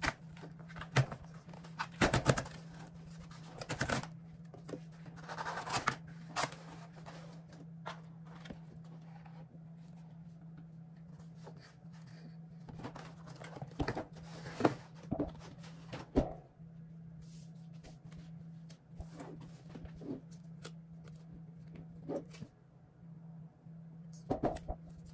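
Corrugated cardboard shipping box being opened and handled: irregular rustles, scrapes and knocks, with bursts early on and again in the middle as the boxed laptop is lifted out and turned over. A steady low hum runs underneath.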